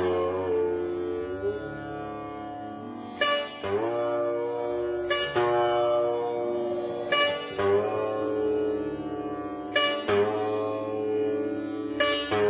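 Sitar playing a slow, unaccompanied alaap in Raag Bhatiyar: a single plucked stroke about every two seconds, each note held and sliding in pitch as it dies away.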